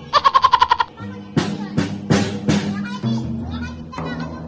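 Acoustic drums struck with drumsticks by a toddler: a fast, uneven run of about eight light strokes in the first second, then four separate harder hits about a third of a second apart, with the drums ringing between them.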